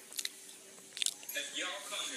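Faint voices talking in a room, with a few short sharp clicks or crunches in the first second.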